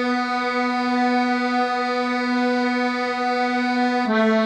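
Notation-software playback of a choral tenor melody in a single synthesized, reed-like instrument tone: one long held note, the B below middle C, tied across two bars, stepping down to A right at the end.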